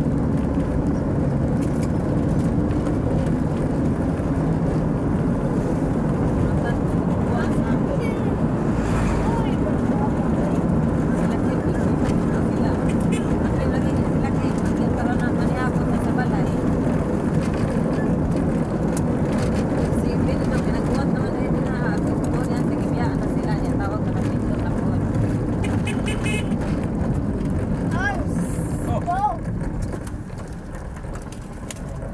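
Steady engine and road noise heard from inside a moving vehicle.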